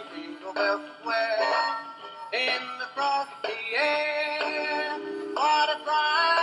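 Animated Santa Claus figure playing a Christmas song, a synthetic-sounding male voice singing held notes over a backing track.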